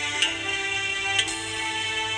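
Alto saxophone playing a slow melody in long held notes, moving to a new note about a fifth of a second in and again just past a second in, each change marked by a crisp attack.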